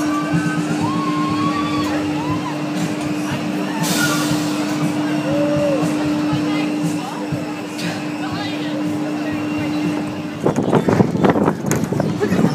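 Steady mechanical hum of a large swinging fairground ride, with scattered voices calling out over it. About ten seconds in it gives way to the rattling, rushing noise of a coaster car running along its steel track.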